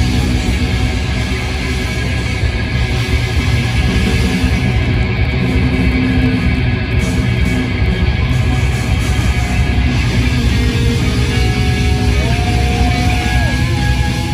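Live hard rock band playing loud and steady: distorted electric guitars, bass guitar and drums, with no vocals. Near the end a guitar note is bent up, held and let back down.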